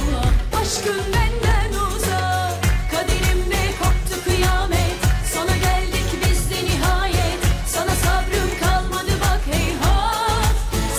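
A woman singing a Turkish pop song live into a handheld microphone over pop accompaniment with a steady beat.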